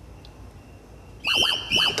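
Quiet room tone, then about a second and a quarter in a short two-part electronic music sting with a high wavering tone, the kind of bumper that marks a scene change in a TV drama.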